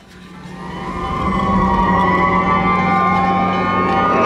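Several emergency vehicle sirens sounding together, their pitches drifting slowly. They fade in over about the first second and then hold steady and loud.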